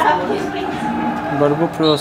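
A man's voice holding a long, low, steady hum of hesitation, then starting to speak near the end.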